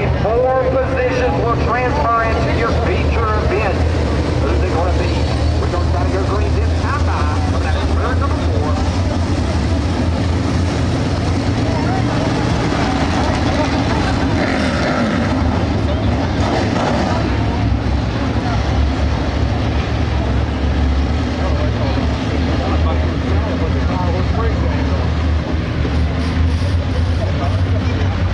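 A pack of 602 crate late model dirt cars racing, their crate V8 engines running together in a loud, steady drone.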